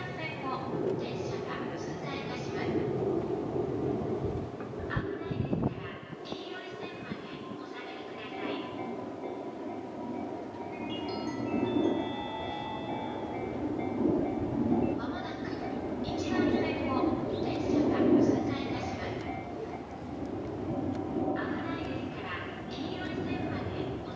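Indistinct voice in several short stretches over a steady low background noise, with a few held high tones about halfway through.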